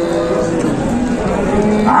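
Cattle lowing: a long, steady call that ends under a second in, with men's voices talking over it.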